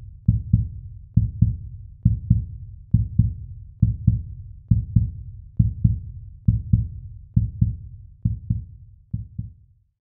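A heartbeat-style sound effect: deep double thumps, one pair a little under once a second, in an even beat.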